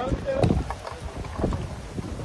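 Outdoor wind buffeting the microphone in low rumbling gusts, strongest about half a second in and again near a second and a half, with scattered voices of a crowd.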